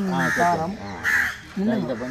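People talking, with a short bird call about a second in.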